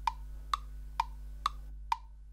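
Cartoon footstep sound effect: hollow wood-block clicks in an even rhythm, about two a second, in step with a walking character.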